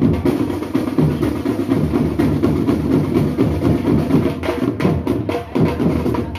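Marching band drum line playing: bass drums and snare drums beating out a continuous rhythm. Sharper, louder strikes come in about four and a half seconds in.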